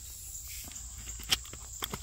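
Crickets chirring steadily in the background, with one sharp click a little past halfway and a fainter click near the end.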